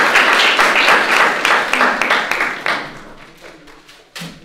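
Audience applauding, loud at first and then thinning out and fading near the end.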